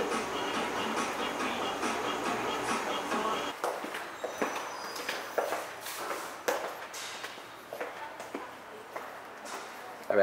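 Budots dance music playing faintly for the first few seconds. After an abrupt change, scattered footsteps and light knocks on a tiled corridor floor.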